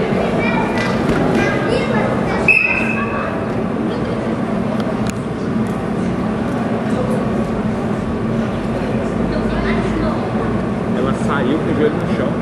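Spectators chattering in a large sports hall, a steady mix of many voices with no one voice standing out. About two and a half seconds in there is a thud with a brief high-pitched tone.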